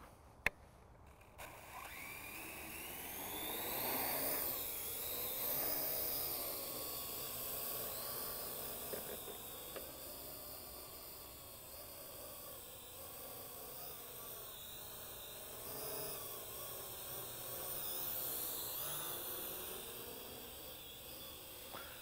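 Parrot AR.Drone quadcopter's electric motors and propellers whining as it spins up and lifts off about a second and a half in. The pitch rises over the next couple of seconds, then wavers up and down as it flies.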